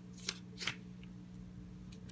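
Paper rustling faintly as a hand grips and turns a page in a three-ring binder journal, with a few short rustles. A steady low hum lies underneath.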